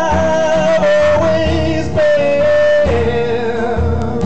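A man singing high, wordless held notes with vibrato over strummed acoustic guitar; the sung pitch steps down to a lower held note about three seconds in.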